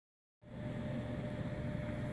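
Steady low room rumble with a thin, steady hum above it, starting about half a second in.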